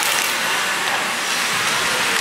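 Steady ice-arena ambience during play: hockey skates scraping the ice, heard as a continuous hiss in the rink's echo.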